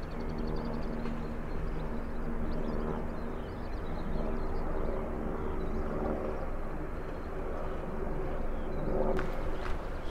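A steady low mechanical hum, holding one even pitch, over outdoor background noise; it fades about a second before the end.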